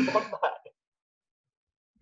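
A man's short laugh, heard over video-call audio, with the tail of his words, lasting under a second. The sound then cuts out completely, as the call's noise gate closes.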